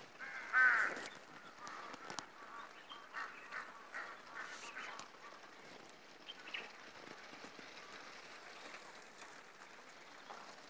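A series of animal calls: one loud call about half a second in, then several shorter calls over the next few seconds, fading to a faint steady background.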